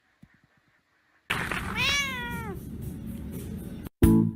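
A cat meows once, one drawn-out meow that rises and then falls in pitch, over a steady hiss that starts suddenly just before it. A few faint clicks come before.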